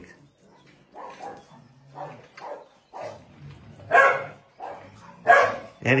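Dogs barking in short, separate barks. The loudest come about four seconds in and again just after five seconds.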